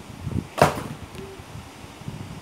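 Close-up handling noise from a stack of Pokémon trading cards being shuffled in the hands, with one short, sharp swish about half a second in that is the loudest sound.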